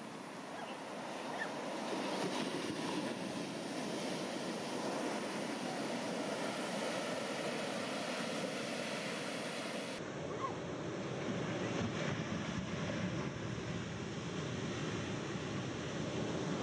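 Ocean surf: large waves breaking and washing in, a steady rushing noise of water. About ten seconds in the sound turns duller and deeper.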